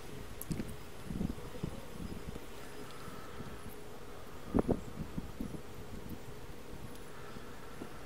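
Faint background noise with a steady low hum, and one short thump about four and a half seconds in.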